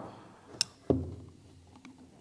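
Handling noise from taking a cordless drill apart: a sharp click about half a second in, then a duller knock, as a screwdriver is picked up off the bench and set against the drill's motor assembly.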